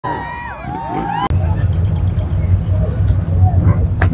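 Motorcycle engine revving, its pitch sweeping up and down, cut off abruptly about a second in. After the cut there is a steady low rumble with faint distant voices.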